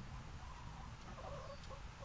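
Backyard hens clucking faintly, a short run of soft calls about halfway through, over a steady low background rumble.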